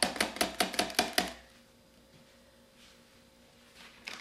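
A spoon stirring flour into a yeast starter in a plastic tub, tapping against the tub's sides in a quick run of about six taps a second for just over a second.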